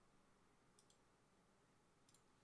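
Near silence: room tone, with a faint computer mouse click a little under halfway in.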